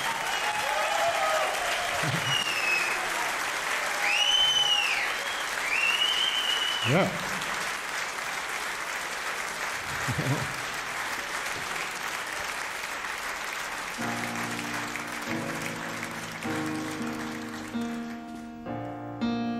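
Concert audience applauding, with several rising-and-falling whistles from the crowd in the first few seconds. About fourteen seconds in, a piano starts playing quiet chords under the fading applause.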